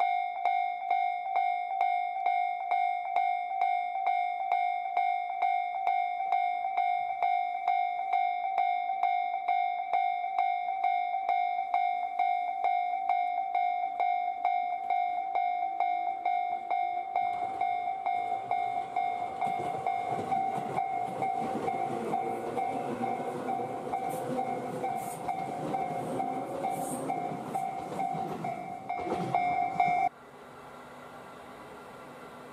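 Japanese railway level-crossing alarm ringing loud and steady, about two or three strikes a second. From about 17 seconds in, the running noise of a passing Tobu 10000 series electric train rises beneath it, with wheel rumble and the odd high squeal, growing louder toward the end.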